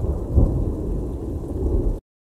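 Thunder rumbling low with rain, swelling louder about half a second in, then cutting off abruptly at the end.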